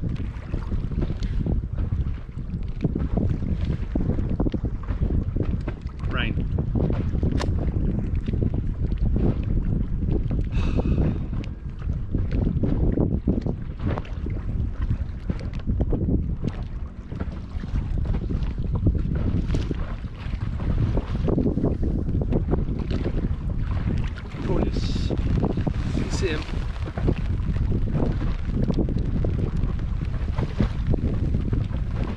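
Strong wind buffeting the microphone on a small inflatable boat in a choppy sea, in uneven gusts, with a few brief high squeaks.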